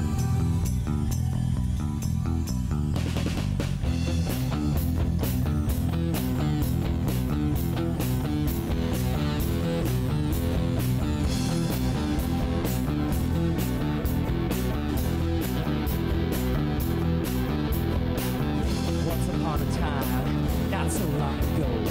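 Live rock band playing a song with drum kit, bass and electric guitar. The opening is softer; about three seconds in the drums come in with a steady cymbal beat over a strong bass line.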